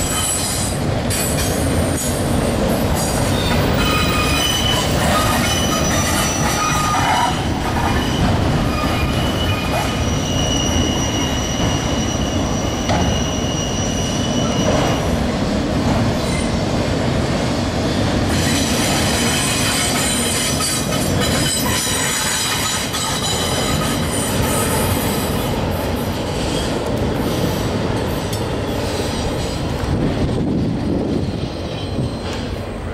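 Autorack freight train rolling past close by: a steady rumble of steel wheels on rail, with high-pitched wheel squeal coming and going over it.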